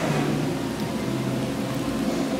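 Steady background hum and hiss of the restaurant room, with a faint low drone.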